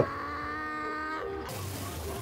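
Episode soundtrack heard faintly: a held, steady pitched tone with many overtones for about a second and a half, then a sudden hiss of water spraying out.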